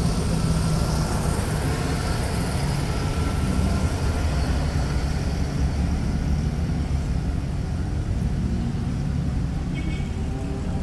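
Vintage cars driving slowly past one after another with their engines running, loudest in the first second as one passes close.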